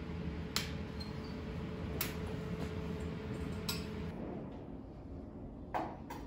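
Freshly fired glazed ceramic pots ticking and pinging as they cool out of the kiln: a few sharp, glassy ticks about one to two seconds apart, typical of the glaze crazing as it contracts. Under them is a steady low hum that fades about four seconds in.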